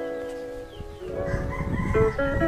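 Guitar background music, a chord ringing and slowly fading; about a second in, a rooster crows once over it.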